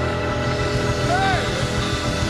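Live blues band playing, with guitar and drum kit, and one short note about a second in that bends up and back down.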